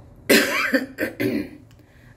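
A woman coughing into her hand, about three coughs in quick succession starting a moment in, the first the loudest.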